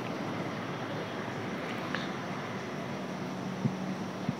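Steady background noise with a faint low hum, and a couple of faint clicks about two seconds in and near the end.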